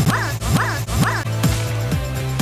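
Music with a steady low tone and beat, over a short rising-and-falling yelping sound repeated about twice a second, the same clip looped.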